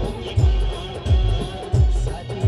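Loud live band music: heavy bass-drum beats, each dropping in pitch, come evenly about every two-thirds of a second under a held melody line.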